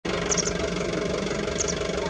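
A steady engine hum running evenly, with two short clusters of faint high chirps, one near the start and one near the end.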